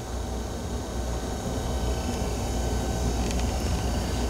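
Steady low room hum with a faint even hiss, from background machinery such as air handling.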